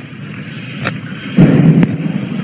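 A dull, muffled thump about one and a half seconds in, with a sharp click shortly before it, over the background noise of a police body-worn camera recording. The thump is a suspected distant .308 rifle shot, which others had taken for a door sound.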